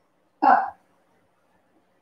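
Speech only: a woman says one short word, "Hop", about half a second in; the rest is very quiet.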